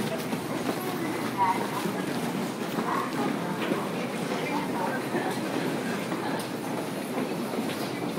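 Commuter train running alongside a station platform, a steady rumble, under the murmur and footsteps of a crowd of passengers walking off the platform.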